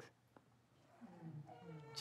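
Near silence with a tiny click, then, about a second in, a faint drawn-out voice-like sound that glides in pitch.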